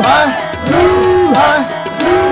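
Tabla playing a steady rhythm, the bass drum's pitch swelling up and falling back about once a second between sharp strokes, over sustained harmonium notes. This is kirtan accompaniment.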